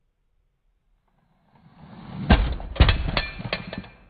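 A red toy car rolls across a stone floor and crashes into a plasticine model car pressed against a wall. The rolling noise builds for about a second, then comes a loud knock, a second knock half a second later, and a few smaller clattering clicks.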